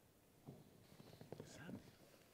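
Near silence, with faint whispered speech starting about half a second in.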